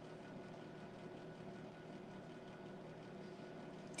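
Quiet room tone: a faint steady hum with no distinct sounds.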